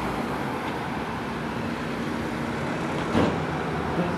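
Car driving slowly past on a town street, steady engine and tyre noise with no siren sounding, and a brief louder burst of noise about three seconds in.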